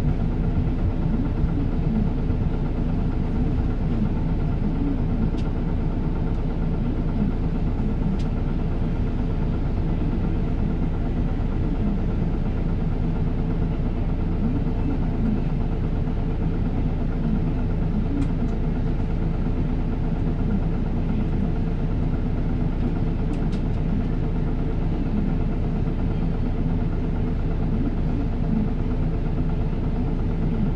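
Isuzu Erga Mio city bus's diesel engine running steadily, with no change in pitch.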